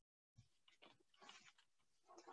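Near silence: faint scattered clicks and rustles picked up by a video-call microphone, which drops to dead silence for a moment near the start.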